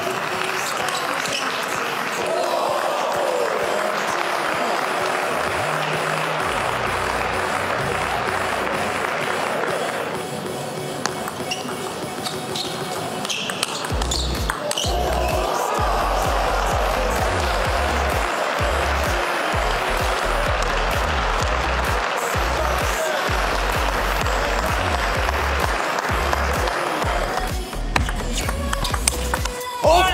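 Table tennis ball clicking off bats and the table during rallies, over steady arena crowd noise. Background music with a steady low beat comes in about halfway through.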